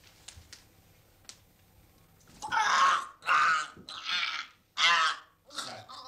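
A few faint clicks, then a man's hoarse, strangled cries as a hand grips his throat: five rough gasping bursts in quick succession, starting a bit over two seconds in.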